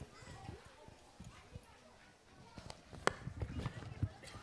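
Scattered knocks and thumps, sparse at first and then several sharper ones close together in the last second or so, over a low background of faint voices.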